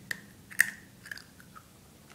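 A person chewing a mouthful of cat food: a few short, wet mouth clicks, the loudest about half a second in.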